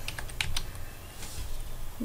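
Computer keyboard keystrokes: a few irregularly spaced key clicks as text is typed and deleted in a field.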